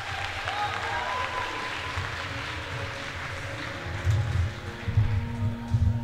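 Audience applauding in a gym, with background music playing; a heavy bass beat in the music comes up in the last couple of seconds.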